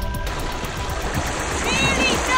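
A music track cuts off a moment in, leaving a steady wash of water and wind at the shoreline. Near the end comes a short high-pitched call.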